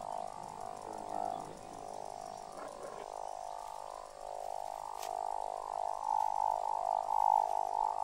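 Dense chorus of frogs calling continuously, a steady mass of overlapping croaks.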